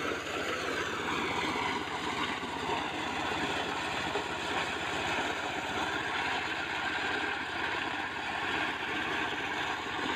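Small engine-driven portable corn sheller running steadily as it shells dry corn cobs, a fast, even engine beat under a continuous mechanical rattle.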